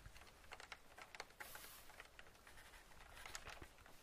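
Faint computer keyboard typing: irregular light key clicks in a small room, with a brief hiss about a second and a half in.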